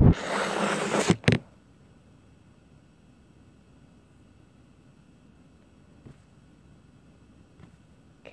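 Handling noise of a smartphone in the hand: a loud rustle as fingers rub over its microphone for about a second, ending in a click. After that only quiet room tone, with a couple of faint ticks.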